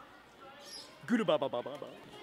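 A man's voice: a short, loud shouted exclamation about a second in, after a quiet start.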